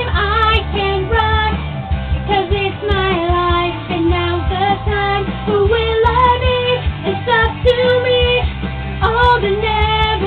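A young woman singing a pop song solo, moving through short held notes, over backing music with a steady low bass.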